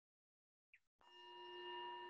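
A singing bowl starts ringing about a second in, swelling and then holding steady, several clear pitches sounding at once.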